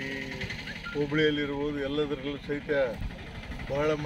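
A man speaking to the camera, his voice starting and stopping in phrases.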